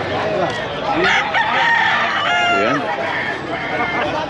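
Gamefowl roosters crowing, with a long drawn-out crow about a second in that overlaps a second crow.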